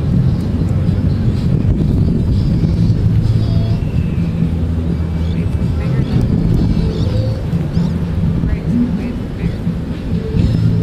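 Steady low rumble of wind on the microphone and surf washing in from the sea, with faint, indistinct voices of people nearby.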